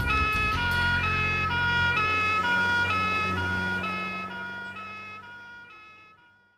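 Two-tone police siren on a Ford Anglia panda car, switching between a higher and a lower note, each held a little under half a second, over the car's engine. It fades away over the last couple of seconds as the car drives off.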